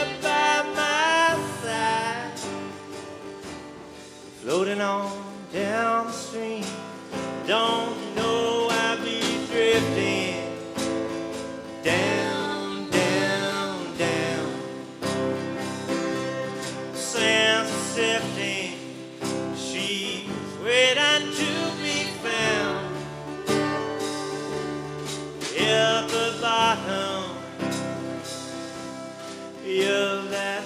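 Live acoustic band in an instrumental break: a flute plays a wavering melody over a strummed acoustic guitar and a plucked double bass.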